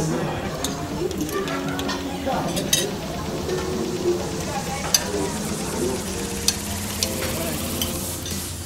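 Spoon and fork scraping on a ceramic plate, with a few sharp clinks of metal on china scattered through.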